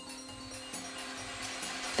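Soft background music with a few held steady tones, and near the end a rising whir as the lottery ball-drawing machines start up and set the balls tumbling.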